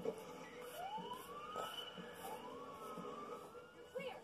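Faint siren wail, rising in pitch twice over a low steady hum.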